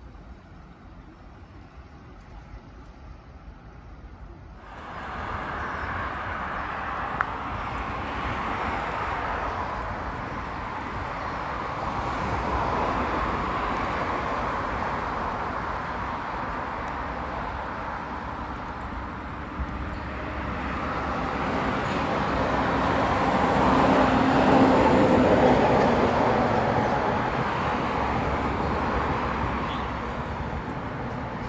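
Outdoor road traffic noise: quiet for the first few seconds, then a steady traffic hiss that starts suddenly and swells to its loudest about three quarters of the way through as a vehicle passes.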